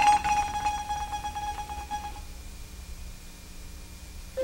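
Wooden marimba holding one note as a rapid mallet roll, the end of a descending run. It dies away about two seconds in, leaving a hushed pause.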